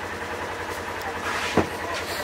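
Vehicle engine running steadily at idle, with one sharp knock about one and a half seconds in.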